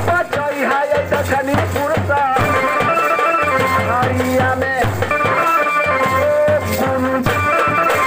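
Live Bhojpuri folk music: a hand drum keeps a steady beat throughout. Over it, a wavering melody in the first couple of seconds gives way to a line of steady held notes.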